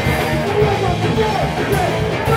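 Punk rock band playing live, loud and dense: distorted electric guitar over bass and drums, with a melodic line bending in pitch.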